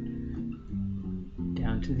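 Telecaster-style electric guitar: a C7 chord rings steadily, then fresh chords are struck about half a second and a second and a half in as the progression moves on toward the F chord.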